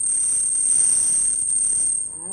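A loud, steady, very high-pitched electronic tone with a fainter, lower tone beneath it, held as part of an experimental improvised music piece; the lower tone stops at the end and the high one fades.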